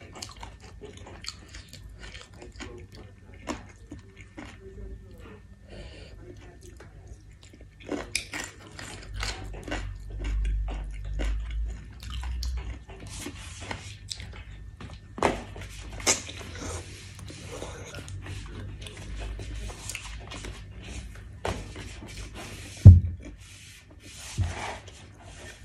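Chewing and biting on chicken feet and rice noodles, with many small wet clicks and smacks of the mouth. A single loud thump comes near the end.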